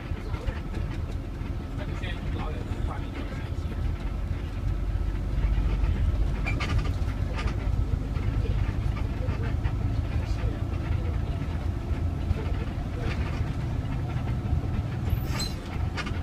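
City bus in motion, heard from inside the cabin: a steady low engine and road rumble, with scattered rattles and clicks from the bodywork.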